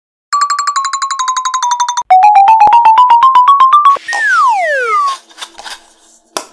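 Electronic intro jingle: a fast run of short beeps stepping down in pitch, then a louder run stepping up, ending in a falling whistle-like glide. A few faint clicks follow near the end.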